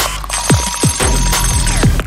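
Electronic theme music with a drum-machine beat of deep kick drums that drop in pitch. An alarm-clock-like bell ringing is layered over it, starting just after the beginning and stopping shortly before the end.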